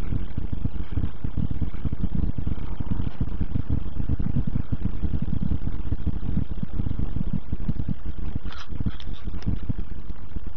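Car audio subwoofers playing a bass test track loud inside the vehicle's cabin: a dense, deep rumble with a fast flutter, steady in level.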